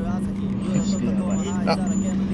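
Steady low drone of a car cabin while driving, with faint voices murmuring underneath.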